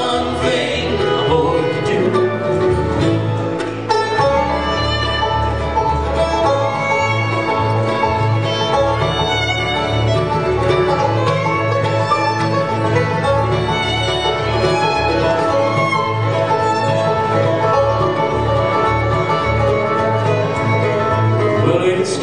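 Bluegrass band playing an instrumental break between verses: banjo, fiddle and guitar over a steady, even bass beat.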